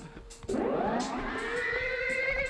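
Music starting about half a second in: a held electric-guitar note whose pitch slides up and then holds with a wavering vibrato.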